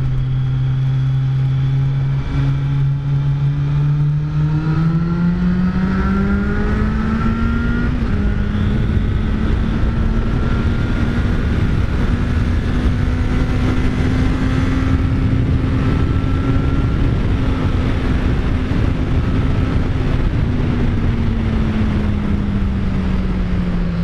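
Kawasaki Z900's inline-four engine under way, running steadily at first, then rising in pitch as it accelerates for a few seconds, holding there, and easing down near the end. Wind rush on the helmet camera runs under it.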